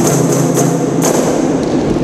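Rebana frame drums struck by a group of players, a sharp strike at the start and another about a second in, with the beat thinning out after that. Under the drums, voices hold a long sung note.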